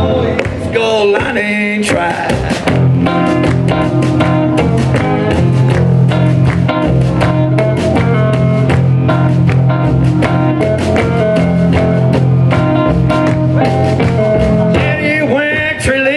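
Live blues band playing: electric guitar, plucked upright double bass and drum kit, with a steady beat and a continuous bass line.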